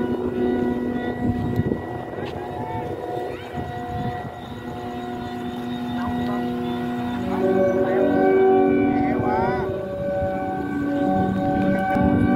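Vietnamese flute kite (diều sáo) sounding in the wind: several kite flutes hold steady tones of different pitches at once, a sustained chord. It swells louder about eight seconds in.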